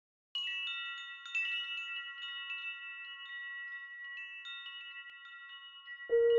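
Wind chimes tinkling: many high, bell-like metal tones struck at irregular moments and ringing on over one another. They begin a moment in and slowly fade, opening a zen-style meditation music piece.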